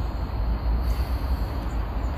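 Steady low rumble of outdoor background noise with no distinct sound standing out.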